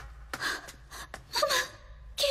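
A short, anxious gasp in a female voice about one and a half seconds in, after a few light quick footsteps.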